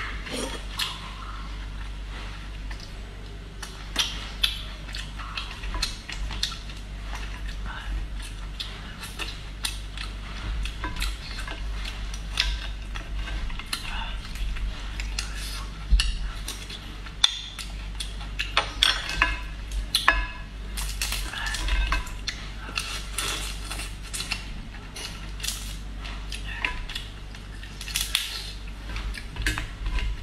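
Eating sounds from a plate of cooked lobster: a metal spoon clicking on the dish and the shell being cracked and pulled apart by hand, heard as many short irregular clicks and crackles over a steady low hum.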